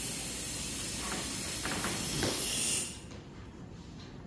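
A steady hiss that cuts off suddenly about three seconds in, leaving only quiet room tone.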